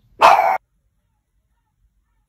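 One short, loud cry of exasperation from a person, lasting under half a second.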